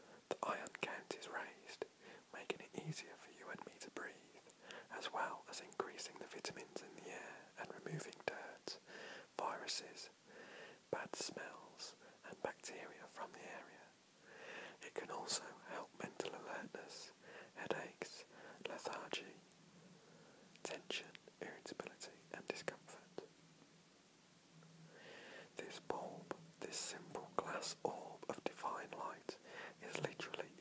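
A man reading aloud in a whisper, with crisp, breathy consonants. He pauses for about five seconds a little past the middle.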